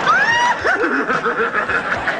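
Studio audience laughing. Over it a man's falsetto voice gives a short whoop that rises in pitch at the start, then a warbling vocal sound that lasts about a second.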